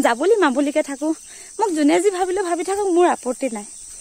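A woman singing in long, wavering held notes, with a steady high trill of crickets behind her.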